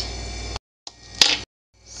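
A single sharp click a little past the middle, between two short cuts to dead silence, over a low steady hum.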